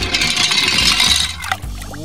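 A toy school bus splashing into a shallow paddling pool of water: a burst of splashing that dies away after about a second and a half, with background music underneath.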